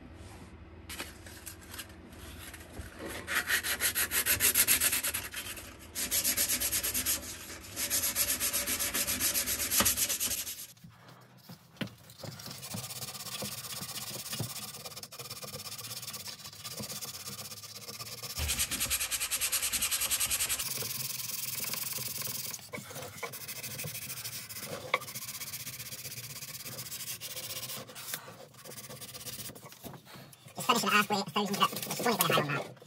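Wood being sanded by hand with sandpaper, in spells of rapid back-and-forth strokes, loudest in the first third. The sanding is taking dried glue squeeze-out off the glued joints before finishing.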